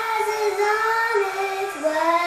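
A young girl singing long held notes of a melody, scooping up into the first note and dropping to a lower one near the end.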